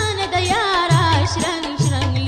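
Pashto folk song: a singer's ornamented, wavering melody over steady accompaniment, with a deep drum stroke about once a second.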